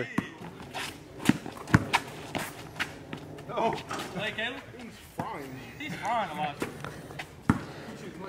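Basketball bouncing on a concrete driveway: a few sharp, irregular bounces in the first three seconds and another near the end, with players' voices in between.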